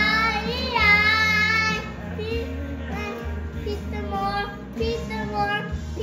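A young boy singing loudly along to a country song, belting a long held note in the first two seconds and then singing on more softly, over live concert music playing from a TV.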